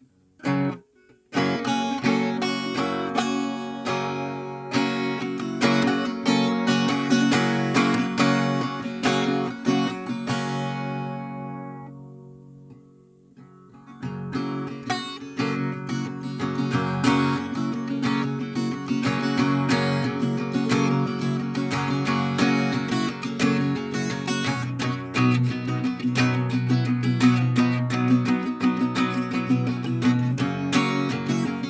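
Cutaway steel-string acoustic guitar with a capo, played with picked notes and strummed chords. About twelve seconds in, the playing rings out and fades almost to silence, then starts again about two seconds later.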